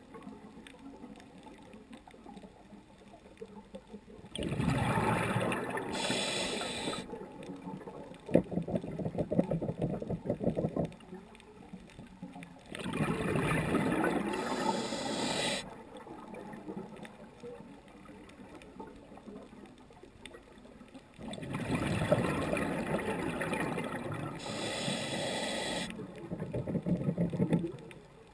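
Scuba diver breathing underwater through a regulator: three breaths about eight to nine seconds apart, each a rush of bubbles and a hiss, with bubbly crackling between them.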